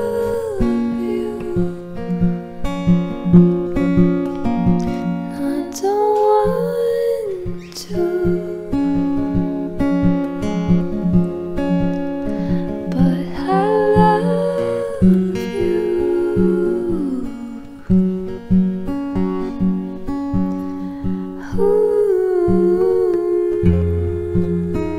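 Acoustic guitar played with a capo, with a woman's voice singing or humming without clear words over it in a few long, gliding phrases.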